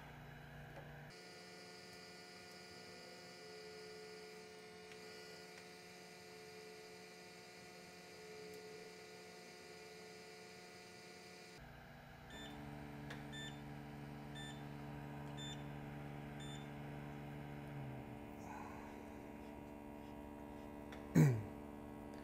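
Steady hum of a hot-air rework station's heater head running a reflow cycle. Partway through, a run of short electronic beeps, roughly in pairs, sounds for a few seconds. About 18 s in, a low tone drops in pitch and fades out, and a short loud sound comes near the end.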